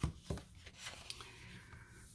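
Pages of a paper sticker book being turned and handled on a tabletop: a sharp tap at the very start, another a moment later, then faint paper rustling.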